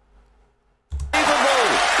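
Near silence for about a second, then a short thump and a snooker crowd applauding, with a man's voice over the applause.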